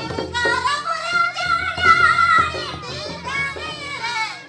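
Group singing of an Adivasi Karam festival folk song, the voices holding long, wavering notes over a beaten barrel drum.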